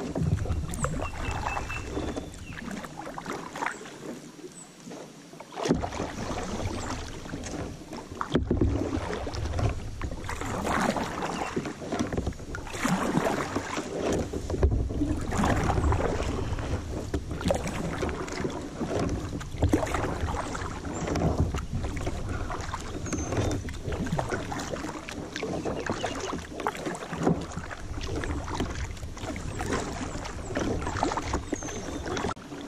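Kayak paddle strokes in the water, a splash and drip swelling about every one to two seconds, with wind buffeting the microphone in a low rumble.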